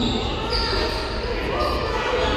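Basketball game sound in a gym: the ball bouncing on the wooden court and players moving, with voices echoing in the hall.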